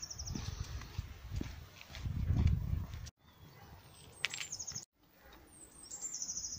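A small songbird singing short, high, rapid trills, three times, over a low rumbling noise that swells about two seconds in.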